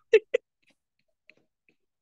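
A woman's short laugh, two quick breathy 'ha' sounds, then near silence.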